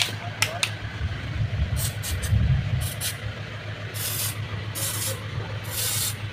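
Aerosol can of penetrating lubricant sprayed into a car's power-mirror folding mechanism in a series of short hissing squirts, the longer ones coming about once a second from four seconds in. A low rumble runs underneath, swelling between two and three seconds in.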